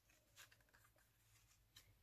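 Near silence: room tone, with two very faint soft ticks, one near the start and one near the end.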